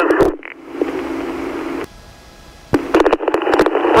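Police two-way radio between transmissions: a short beep, then about a second of open-channel static that cuts off abruptly. After a brief lull, a click marks the next transmission keying up near the end.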